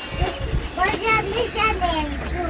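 Children's high voices calling and chattering in the background, loudest in the second half.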